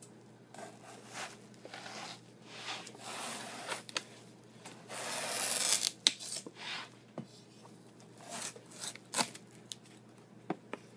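A watermelon being cut and handled on a cutting board: a series of short scraping and rubbing sounds, the longest and loudest about five seconds in, with a few sharp knocks after it.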